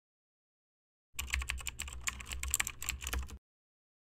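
Typing on a computer keyboard: a quick run of clicking keystrokes starting about a second in and lasting a little over two seconds, with a low hum beneath, then it stops abruptly.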